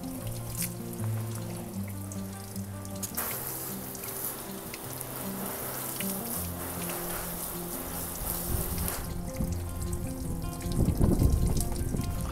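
Background music with long held notes, over a fainter hiss of water from a hose spraying onto a car hood and running off the paint.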